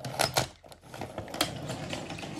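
Toy engines clacking on wooden toy railway track as a hand pushes and knocks them about, a rattle of small clicks with a few sharper clacks, the loudest about a second and a half in.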